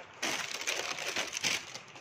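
Crumpled tissue wrapping paper in a shoebox crinkling and rustling as hands pull it open, in dense irregular crackles beginning a moment in.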